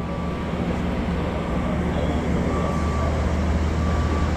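Steady low hum of an electrically driven JLG articulating boom lift working its boom, with a faint thin whine coming and going over it.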